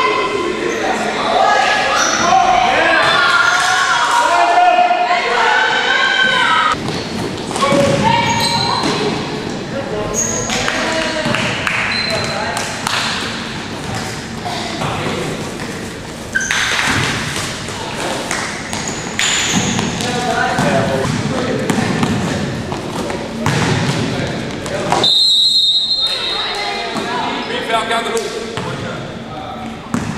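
Basketball bouncing and thudding on a hardwood gym floor during a youth game, with players' and spectators' voices echoing in a large gym hall.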